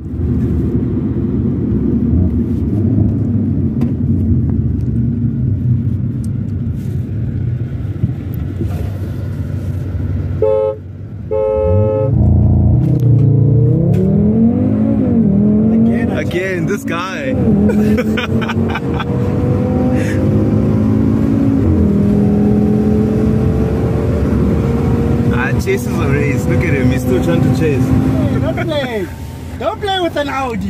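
Car engine running while driving, with two short horn toots about eleven seconds in. The engine is then revved up and down a few times, and later its pitch climbs slowly as the car accelerates.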